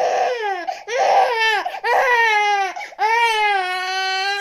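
Newborn baby crying: four wails in a row, each bending down in pitch at its end, the last one held longer.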